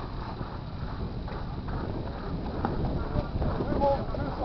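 Wind rumbling on a camcorder microphone at an open ballfield, with faint, indistinct voices of players and a few light clicks.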